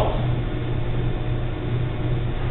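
A steady low hum that throbs a few times a second, over a faint even hiss.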